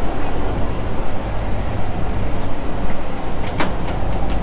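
Steady low rumble of an ETS electric train carriage interior, with a single sharp knock near the end as a bag goes into the overhead luggage rack.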